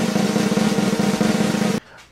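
Snare drum roll, steady and fast for nearly two seconds and cutting off suddenly near the end.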